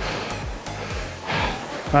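Background music with a steady beat over the rushing whoosh of a Concept2 rowing machine's air-fan flywheel, swelling during the slow drive of a stroke.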